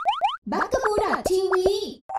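Cartoon sound logo: a quick run of rising boing effects that stops under half a second in, followed by a high-pitched cartoon voice calling out.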